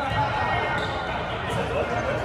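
Indoor gym ambience: players' voices and chatter echoing in a large hall, with a few sharp thuds of volleyballs on the hard court.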